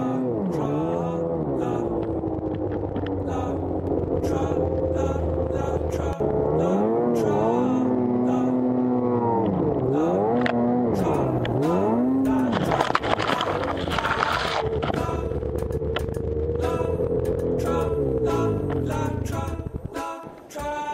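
Snowmobile engine revving up and down over and over, its pitch swelling and falling about once a second, with a few longer held revs in between.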